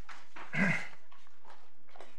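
A single brief cough-like vocal sound about half a second in, over quiet room tone with a faint steady hum.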